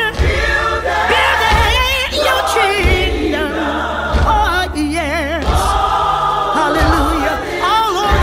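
Gospel choir singing with heavy vibrato over a band, a low beat falling about every second and a half.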